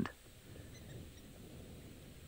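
Faint open-air ambience: a low, steady rumble with a few brief, faint high chirps scattered through it.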